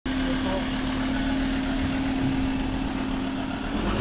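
Ford Ranger Wildtrak pickup's engine idling, with a steady hum that fades just before the end.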